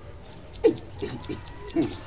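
Birds calling: a quick run of high, short chirps, about six a second, with a few lower, falling calls under them.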